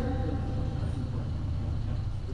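A steady low hum and rumble of background noise with no speech over it, even in level throughout.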